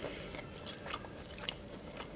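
Faint crackle of a crisp fried chebureki's pastry being torn apart by hand, with a few small ticks.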